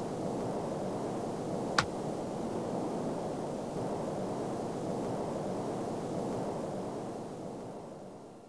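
Underwater chorus of many snapping shrimp: a dense, steady hiss of tiny snaps with one sharper snap about two seconds in, fading out near the end.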